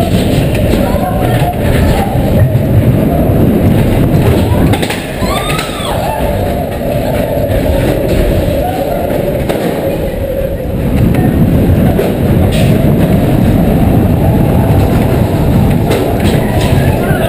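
Matterhorn Bobsleds coaster car running along its tubular steel track, a loud continuous rumble of the wheels that eases off a little about halfway through and then picks up again. A few short voices rise over it.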